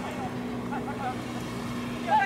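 Soccer players shouting short calls to each other during play, heard at a distance, over a steady low hum.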